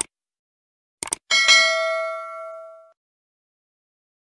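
Subscribe-button sound effect: a mouse click, a quick double click about a second in, then a single bell ding that rings and fades over about a second and a half.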